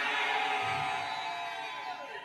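A held musical chord with the congregation cheering under it. Both fade away towards the end.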